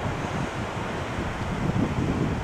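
Steady wind noise buffeting the microphone, mixed with the wash of surf.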